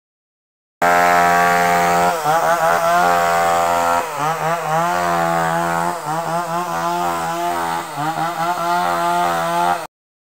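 A power tool running at a steady high pitch, dipping repeatedly as it bites into wood under load. It starts about a second in and cuts off just before the end.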